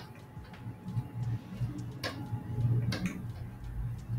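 Scattered sharp clicks from a digital drawing workstation, with two louder ones about two and three seconds in, over a low hum.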